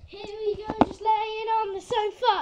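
A child singing two long held notes at about the same pitch, with a couple of sharp clicks about halfway through.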